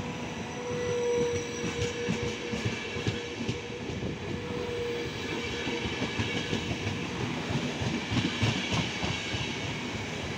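Trenitalia Intercity passenger coaches rolling past at close range: a steady rumble of wheels on rail with irregular clattering knocks. A thin, steady high tone sounds over it for the first few seconds.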